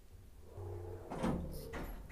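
Door being handled: a low hum starts about half a second in, then a short run of sharp clicks and knocks about a second in.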